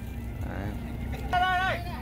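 A steady low rumble with one short, held vocal sound from a person a little over a second in.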